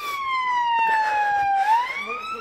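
Police vehicle siren wailing: one long tone sliding slowly down, then starting to rise again about a second and a half in.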